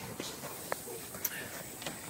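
Faint handling and movement noise from a camera being carried while walking: a few light clicks and taps over a steady background hiss.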